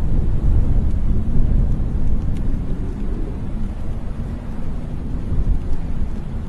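A loud, steady deep rumble from a TV drama's soundtrack.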